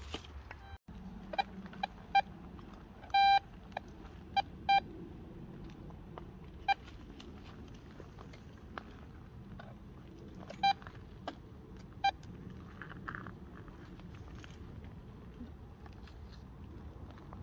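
TACKLIFE metal detector beeping: about eight short beeps at one mid pitch, irregularly spaced, one a little longer about three seconds in, as the search coil is swept over the ground and passes over metal.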